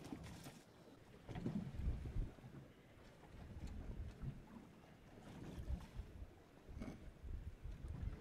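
Low, gusting wind rumble on the microphone aboard a small fishing boat, with water moving against the hull; it swells and fades several times, with a few faint ticks.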